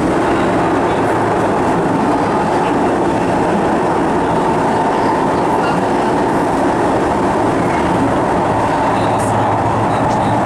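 SMRT North-South Line MRT train running steadily through its tunnel, heard from inside the carriage: an even, loud rumble of wheels on rail with a constant hum under it.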